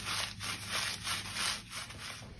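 Brown packing paper being crumpled and scrunched between the hands, a crinkling rustle that swells with each of a few squeezes.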